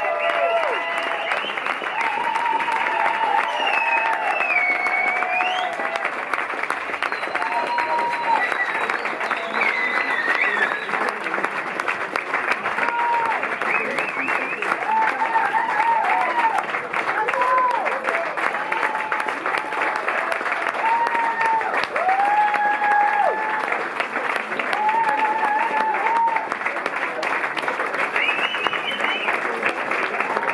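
Audience applauding steadily and cheering, with many short shouts and whoops rising above the clapping.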